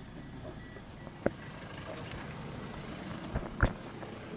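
A car standing and pulling away, with low engine and street noise; an evenly repeating electronic beep sounds until about a second in. Two sharp knocks sound, one about a second in and a louder one near the end.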